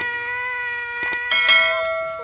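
Subscribe-button animation sound effects: a mouse click at the start and two quick clicks about a second in, then a bright bell-like chime that starts past halfway and rings on. Under them runs a steady held electronic tone.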